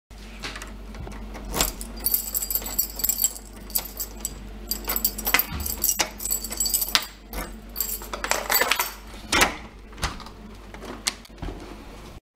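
A bunch of keys on a ring jangling while a key is worked in the lock of a uPVC door, with repeated sharp clicks of the lock and keys throughout and a bright metallic jingle in the first few seconds.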